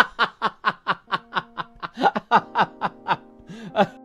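A person laughing in a rapid run of short 'ha' bursts, about five a second, with music coming in underneath about a second in.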